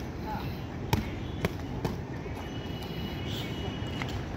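Boxing gloves striking focus mitts: three sharp slaps about a second in, each about half a second apart.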